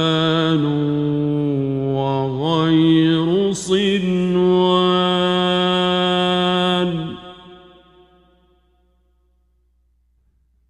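A male reciter chanting the Quran in the ornamented tajweed style, one unaccompanied voice drawing out a vowel in long wavering runs that slide up and down in pitch. The last note is held steady for about three seconds and fades out about seven seconds in, followed by a pause of near quiet.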